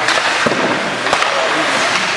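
Ice hockey play in an indoor rink: a steady scrape and hiss of skates on the ice, broken by a few sharp clacks of sticks and puck, with voices in the stands.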